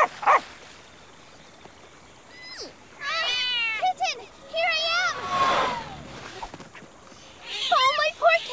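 Cartoon cheetah cubs mewing in short, high, wavering cries, a few times over, with a swishing sound effect in the middle.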